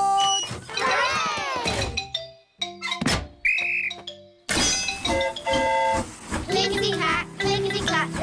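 A guard's pea whistle blown once, a short trilling blast about halfway through. It comes between cartoon sound effects and the children's show's background music, which starts up near the end.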